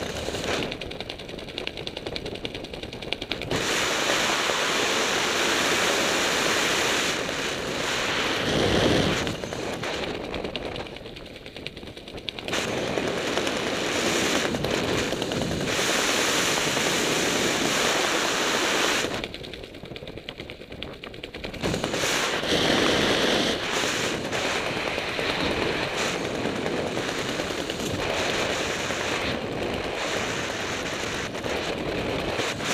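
Wind rushing and buffeting over the microphone of a skydiver's camera under an open parachute. It comes in loud, rough stretches with two quieter spells.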